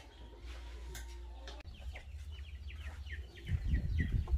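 Domestic chickens clucking: a quick run of short, high, falling calls in the second half, with low thumps near the end.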